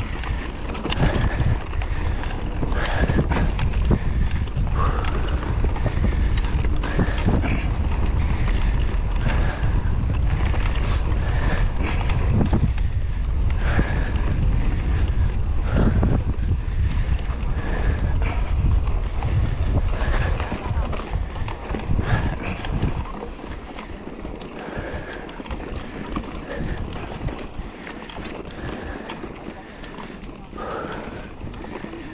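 Mountain bike ridden over a dry dirt track: wind rumble on the microphone and tyre noise on dirt, with a light noise repeating about every second or so from the dry, unlubricated chain and drivetrain. The rumble eases about two-thirds of the way through.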